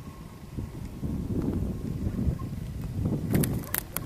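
Wind buffeting the camera's microphone in irregular low rumbling gusts that grow louder after the first second, with a few sharp clicks of handling near the end.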